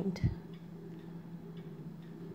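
A short knock just after the start, then faint ticks over a steady low hum.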